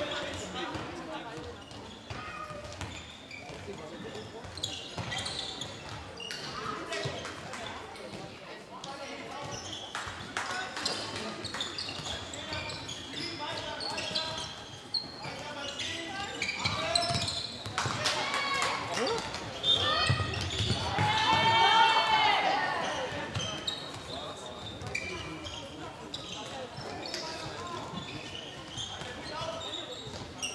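Indoor handball game: a handball bouncing on a sports-hall floor among players' footsteps, with voices calling across the court in an echoing hall. It grows louder for a few seconds about two-thirds of the way through.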